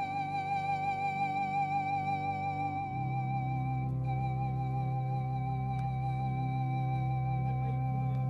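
Background music: a held high tone with a steady waver over sustained low chords, the bass note shifting about three seconds in.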